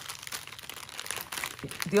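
Clear plastic packaging crinkling and crackling as hands press and handle the bags, a busy run of small crackles.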